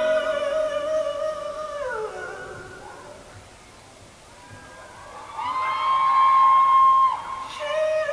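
A female singer in a live ballad performance holds a long note that slides down about two seconds in; after a quieter moment a second, higher note is held steadily and cut off near the end.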